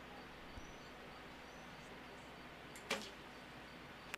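A recurve bow shot about three seconds in, released from full draw: one short, sharp snap of the string over a faint background.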